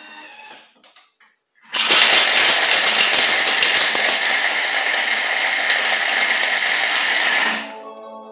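Thermomix grinding chunks of hard chocolate at speed 8: after about two seconds of near quiet, a loud grinding rattle of chocolate against the spinning blades for about six seconds, then it winds down as the program ends. The noise is loud because the chocolate is hard and the speed high.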